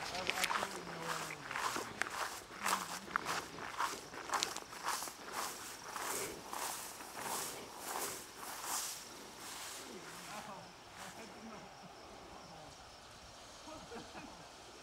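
Footsteps swishing through tall grass, roughly two steps a second, as someone walks steadily and then stops about ten seconds in.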